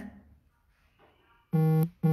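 Two short, identical electronic buzz tones back to back about one and a half seconds in, each a flat, steady low-pitched buzz lasting under half a second, as loud as the talking around them. Just before them the last syllable of a woman's voice trails off into a second of near silence.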